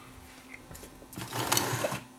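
Handling noise of a small circuit board and its wires being moved across a workbench: a rustling scrape that starts about a second in and grows louder.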